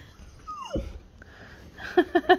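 Boxer dog giving a single short whine that slides steeply down in pitch, followed near the end by a person laughing in quick bursts.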